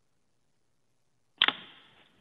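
Silence, then about one and a half seconds in a sharp click as a remote caller's phone line opens, followed by a short, fading hiss of line noise.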